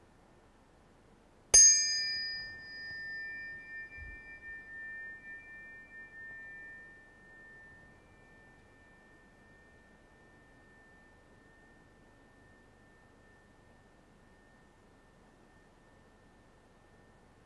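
Two metal tuning forks struck together once, a sharp clink followed by two high, pure tones ringing on. The loudness pulses as the tones ring, the higher tone dies away within several seconds, and the lower one lingers faintly to the end.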